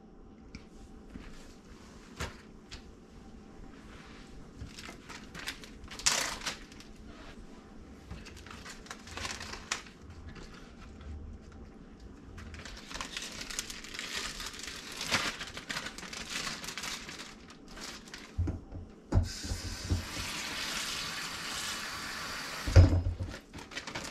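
Plastic zip-top bag crinkling and rustling as it is handled, then a kitchen tap running for about four seconds near the end, with a thump just before the water stops.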